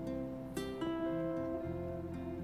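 Soft background music of plucked string notes, with new notes struck about half a second in and again shortly after.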